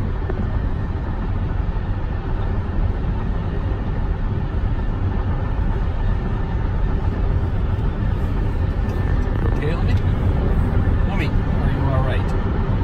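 Steady low road noise inside a car's cabin while driving at highway speed: tyres and engine making a continuous rumble.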